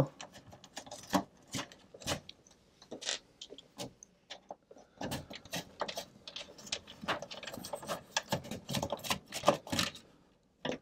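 Screws being backed out of an alarm panel circuit board's mountings in a metal cabinet: a run of small, irregular clicks and scrapes, sparse at first and busier from about halfway through.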